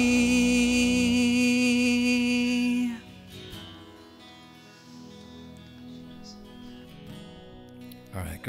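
A worship band ends a song: the singers hold the final note over acoustic guitar and keyboard, then the voices stop about three seconds in and the guitar and keys ring on softly.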